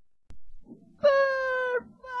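A high-pitched cartoon character's voice holds one level note for under a second, starting about a second in.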